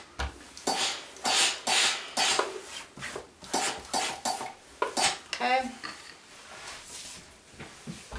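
A steam iron being pushed across a cotton pillow sham and set down on the table, in a run of short scuffing strokes and knocks, with the fabric being handled.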